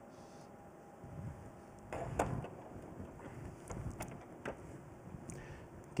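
Faint handling noises: a few light knocks and clicks of objects being moved, the loudest about two seconds in, over quiet room tone.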